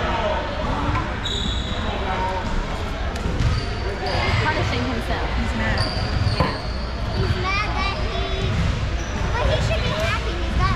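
Basketball bouncing on a hardwood gym floor during a game, with short high sneaker squeaks from players moving on the court.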